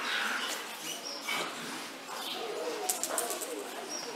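Faint bird calls, with low voices in the background.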